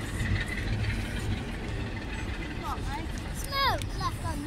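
People talking in the background over a steady low rumble, with one voice standing out near the end.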